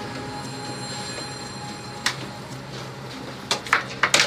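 Steady mechanical hum of ventilation or air conditioning inside a race hauler, with thin whining tones. A sharp click comes about two seconds in, and a couple of knocks come near the end.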